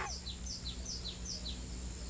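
A bird chirping: a quick run of short, high chirps, each falling in pitch, about four a second, dying away near the end.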